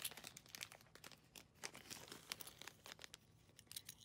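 Faint crinkling and crackling of clear plastic packaging being handled, in irregular small rustles mostly in the first half.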